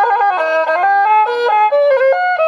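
Instrumental music: a quick melody on a single high, pitched instrument, moving up and down in short stepped notes.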